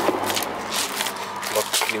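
Rustling and scraping of fabric and nylon tackle bags being handled close to the microphone, in an irregular run of short rustles and knocks.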